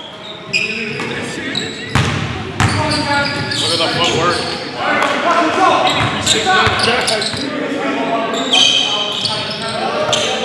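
Game sounds in a gymnasium: a basketball bouncing on the hardwood with a few sharp knocks in the first few seconds, and players' voices calling out across the echoing hall.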